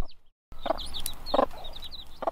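Young chicks peeping in a run of short, high, falling chirps, with a hen among them clucking twice, about a second apart. The sound cuts out for about half a second at the start.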